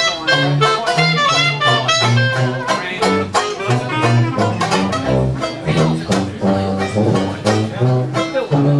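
Dixieland jazz band playing: a clarinet carries the melody over a walking sousaphone bass line and steady banjo chords.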